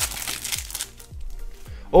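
Foil wrapper of a Panini Adrenalyn XL trading-card booster crinkling as it is torn open, loudest in the first second. Background music with a steady low beat runs underneath.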